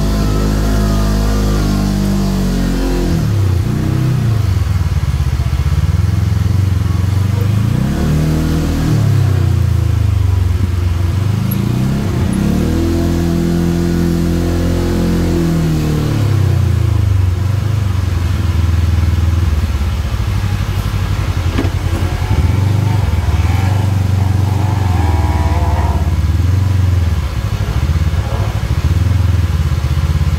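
Off-road vehicle's engine driving a rough dirt trail, revving up and easing off over and over so its pitch rises and falls every few seconds.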